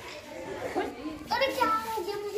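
Children's voices: a child speaking in a high voice in the second half, with children's chatter around it.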